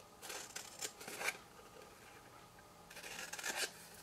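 Scissors snipping through patterned paper, faint: two short cuts in the first second or so, then a longer stretch of cutting near the end.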